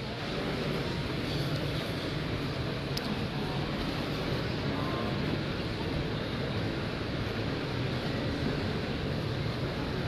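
Steady background noise of a large, busy exhibition hall: a continuous wash of distant crowd murmur and ventilation.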